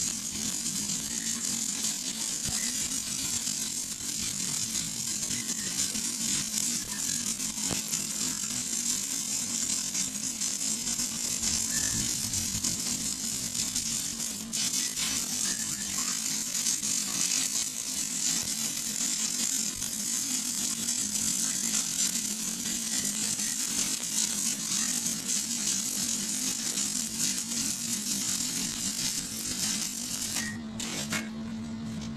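Shielded metal arc (stick) welding on a steel pipe joint: the electrode's arc crackles and sizzles steadily without a break, over a low steady hum.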